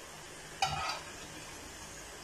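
A metal slotted skimmer scrapes against an aluminium kadai once, briefly, just over half a second in, over a faint steady sizzle of cauliflower pakoras deep-frying in oil.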